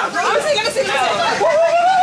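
Excited chatter: several voices talking and exclaiming over one another.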